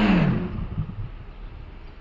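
Outdoor city street noise: a rushing hiss that slowly fades away.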